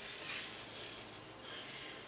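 Faint handling noise, a soft rustle and a light click, as a plastic bucket of carbon beads is picked up.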